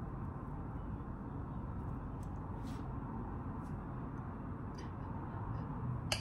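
Quiet steady room noise, with a few faint light clicks from a spoon and palette knife working runny icing on top of a cake.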